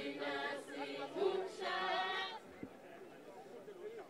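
A group of voices singing a traditional Swazi chant together, breaking off about two and a half seconds in and leaving only faint crowd murmur.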